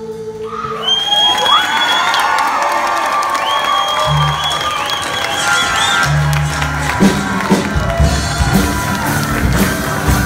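A held choral chord ends and the audience cheers and whoops. Low notes come in about four seconds in, and about seven seconds in the performers start a new song with a steady strummed rhythm.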